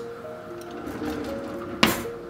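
Background music of soft held notes, with one sharp knock near the end as a wooden kitchen drawer is pushed shut.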